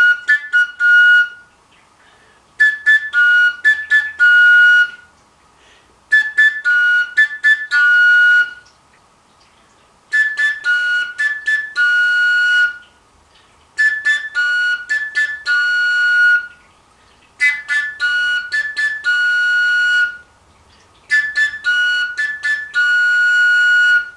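Koncovka, the Slovak overtone flute with no finger holes, played with its lower end open: the same short phrase repeated seven times, each a few quick tongued notes ending on a held note, with about a second's pause between repeats.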